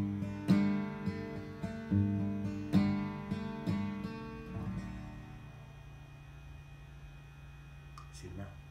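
Acoustic guitar playing the closing bars of a song: picked and strummed chords for the first four or five seconds, then a final chord left ringing and fading away. A faint steady low hum is left under it.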